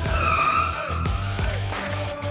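Car tyre squealing for about a second on a parking-garage floor, over background music with a steady beat.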